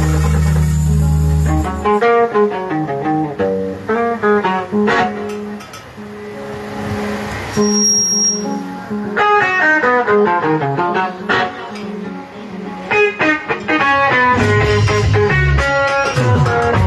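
Live band music led by an electric guitar picking quick runs of single notes. Low sustained bass notes play under it at the start, drop out after about two seconds, and come back near the end.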